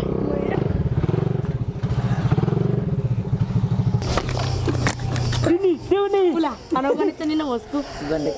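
Small underbone motorcycle engine running with a fast, pulsing note, which stops abruptly about halfway through. A voice calls out over the last few seconds.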